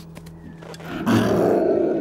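An animated black panther snarls once with a loud big-cat growl, starting about a second in and lasting about a second.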